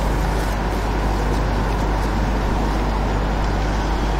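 Steady loud hiss over a low electrical hum, with no speech: the background noise of the recording and sound system, raised during a pause.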